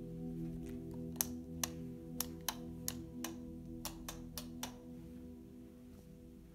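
Dark ambient background music: a steady drone of low held tones. About ten sharp clicks come at uneven intervals between about one and five seconds in, and the drone fades slightly near the end.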